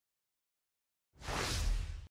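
Silence, then a short whoosh of rushing noise lasting just under a second, starting a little past halfway.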